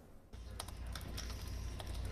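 Fingers typing on an HP laptop keyboard: a handful of irregularly spaced key clicks over a low, steady hum.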